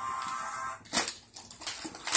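Crinkling tissue paper and a hand cutter slicing through packing tape on a cardboard toy box, with one sharp crackle about a second in and smaller clicks after it.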